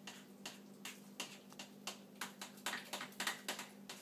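Crisco shortening, sugar and water being mixed by hand in a bowl: irregular wet clicks and squishes, several a second, over a faint steady hum.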